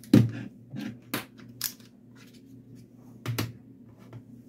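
Handling of a handheld multimeter and its clip-lead wires on a desk: a series of sharp clicks and knocks, the loudest just after the start and another about three seconds in.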